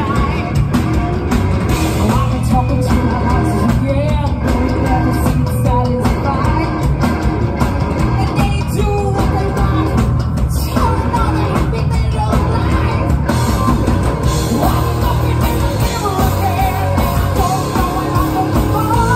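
A rock band playing live and loud: electric guitars, bass guitar and drums, with a female singer singing over them.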